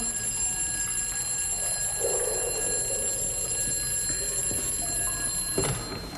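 Electric telephone bell ringing continuously, then cutting off suddenly about five and a half seconds in as the phone is picked up.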